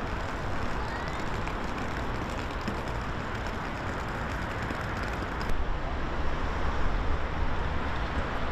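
Outdoor city ambience: a steady rumble of road traffic. About five and a half seconds in, the sound shifts and the low rumble grows a little louder.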